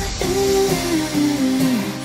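Dance music from a DJ mix: the drum beat drops out and a melody of notes steps downward in pitch, then starts its descent again.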